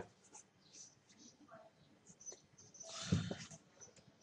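Faint scratching of a pen writing on paper, with a brief, louder scrape about three seconds in.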